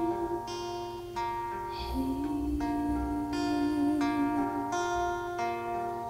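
Acoustic guitar backing picked in a steady pattern, with a new note or chord about every 0.7 s. Over it a voice holds long wavering notes, stepping down in pitch about two seconds in.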